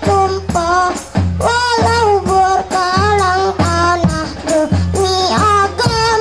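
Hadrah ensemble: a child singing a wavering melody through a microphone, over frame drums and jingling tambourines, with deep bass-drum beats recurring through the song.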